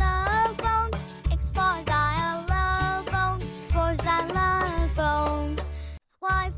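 Children's phonics song: a high, childlike voice singing a melody over a backing track with a steady bass beat. The music cuts off abruptly at the very end.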